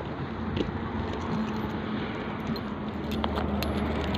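Car park ambience with a steady low engine hum, and a few light metallic clicks and jingles in the last second.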